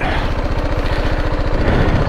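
BMW G310GS's single-cylinder engine running steadily at low speed, with an even pulsing note, as the motorcycle rolls slowly over a grassy track.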